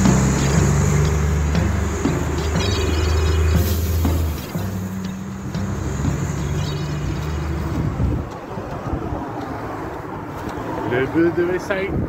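City bus's diesel engine running as the bus pulls away and moves off down the street, loudest in the first four seconds and falling away after about 8 s as it recedes. Music with singing plays over it.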